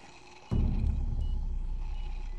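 A low, steady rumbling drone starts suddenly about half a second in, the opening of tense background music in a TV drama's surgery scene.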